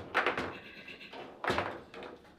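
Table football ball being struck by the plastic player figures and knocking against the table: a quick cluster of sharp knocks at the start and another about a second and a half in.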